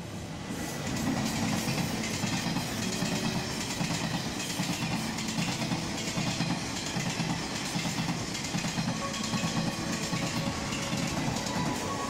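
Taiwan Railways passenger train of orange-and-cream coaches passing, its wheels clattering over the rail joints in a fast, steady rhythm. The noise swells about a second in and then holds.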